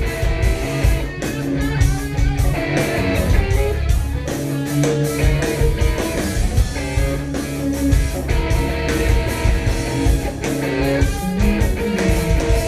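Rock band playing live: electric guitar and bass guitar over a steady beat, an instrumental passage without vocals.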